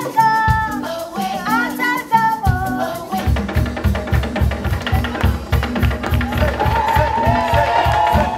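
Live Afro-pop band music: a woman's voice sings a melodic line over the band, then about three seconds in a drum kit starts a fast, steady beat, and the voice comes back with held notes near the end.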